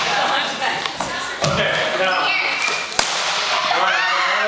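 A dull thump about a second and a half in, then one sharp crack near the end, like a balloon bursting inside a wrestler's balloon-stuffed long johns, over people talking.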